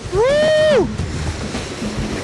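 A single drawn-out vocal whoop that rises in pitch, holds, then drops away, lasting under a second. It is followed by the steady noise of a moving boat on open water.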